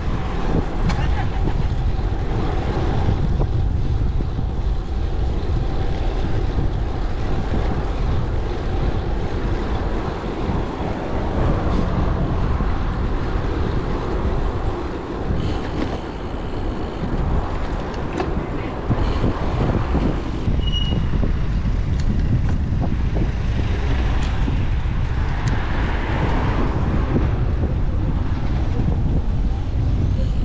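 City road traffic, cars and trucks passing, under a constant low rumble of wind and road noise on a bicycle-mounted action camera's microphone.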